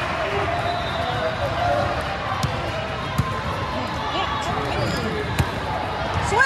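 Basketball bouncing on the court, a few separate sharp bounces, over a steady murmur of many voices echoing in a large hall.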